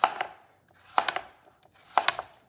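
Kitchen knife slicing through a peeled russet potato and knocking on a wooden cutting board, a few sharp cuts about a second apart.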